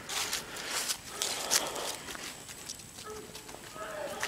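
Footsteps crunching through dry fallen leaves on grass and dirt at a steady walking pace.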